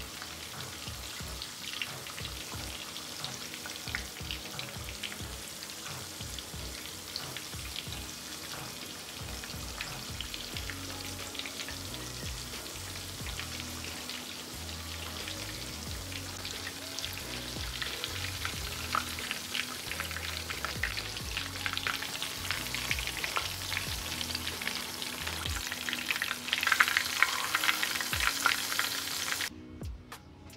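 Besan-battered chicken pieces deep-frying in hot oil in an iron kadai: steady dense crackling and sizzling that grows louder in the last few seconds.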